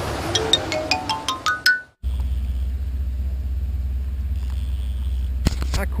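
A quick rising run of about ten bright, chime-like notes, speeding up and climbing in pitch over about two seconds, over a rushing noise. After a sudden break comes a steady low hum, with a single sharp click just before a man starts to speak.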